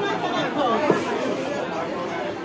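Voices chattering, several people talking at once, with one brief sharp click about a second in.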